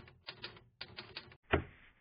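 Typewriter sound effect: quick runs of key clicks in short bursts with brief gaps. About one and a half seconds in comes a single louder thump, a rubber-stamp sound effect.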